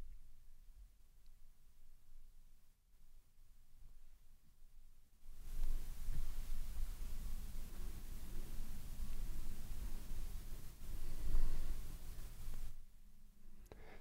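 Noise floor of a Shure SM7B dynamic microphone through a Solid State Logic SSL2+ preamp with no one speaking: faint room tone at a gain of 8.5 out of 10, then about five seconds in the gain is cranked to maximum and a much louder steady hiss and room rumble comes in, dropping back near the end as the gain is returned to 8.5.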